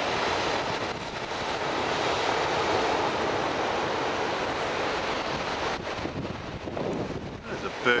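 Steady wash of ocean surf breaking on a sandy beach, with wind blowing across the microphone.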